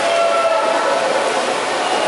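Players' shouts and calls echoing in a large indoor pool hall, with a steady wash of splashing water from swimmers in play.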